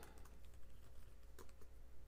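Faint typing on a computer keyboard: a scatter of light keystrokes, one a little louder about one and a half seconds in.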